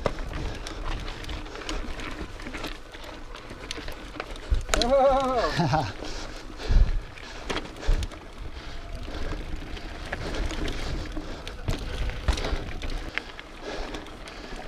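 Mountain bike rolling over rocky dirt singletrack: steady tyre and drivetrain rattle, with a few low thumps a couple of seconds after the middle. A short voice sound, like a brief exclamation, about five seconds in.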